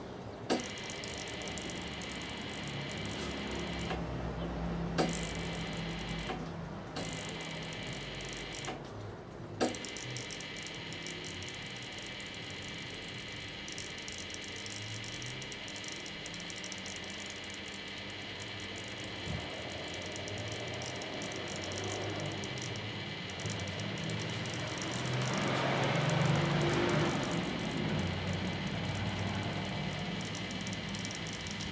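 Two microwave-oven transformers in parallel buzzing steadily under load as they overdrive a pair of 20-watt fluorescent tubes submerged in water, at about 1500 volts and 2 amps. A few sharp clicks stand out in the first ten seconds, and a hissing swell rises near the end.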